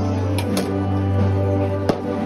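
Brass band playing a slow procession march: several sustained notes held over a deep bass line, with a few sharp hits cutting through.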